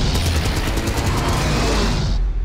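Dramatic film music over dense aerial-combat noise from a WWII bomber under attack.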